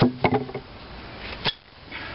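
Sheet-metal gas tank set down among hand tools: a quick cluster of metallic knocks and clinks, then one more sharp clink about a second and a half in.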